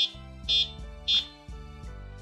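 Electric bike's handlebar electronic horn sounded three times: three short, high-pitched beeps about half a second apart, over background music.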